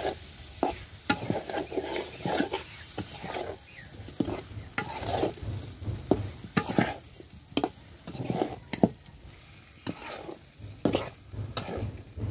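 A spatula scraping and knocking against a blackened wok while spice-coated meat pieces are stirred and fried, with the food sizzling. The scrapes come irregularly, several a second.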